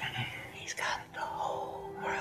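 A woman whispering softly and breathily, close to the microphone, with a faint steady tone coming in about a second in.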